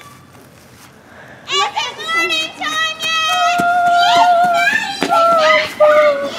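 A girl's high voice vocalizing without clear words in long held notes that step up and down, starting about a second and a half in after a quiet pause.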